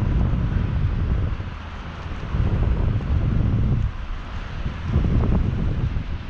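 Wind buffeting the camera's microphone in flight under a parasail: a loud, low, gusting noise that eases off briefly twice, about two and four seconds in.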